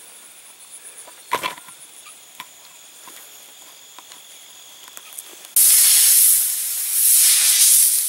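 Insects trilling steadily at a high pitch, with a sharp knock just over a second in. About five and a half seconds in, a loud, even hiss cuts in suddenly and drowns them out.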